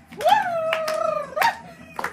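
A person's high-pitched howling 'ooh', held for about a second and sliding slowly down, then a short second cry, with hand claps in between.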